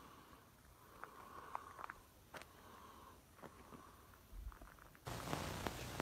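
Faint outdoor background hiss with a few soft clicks; about five seconds in, a louder steady rush of noise comes in.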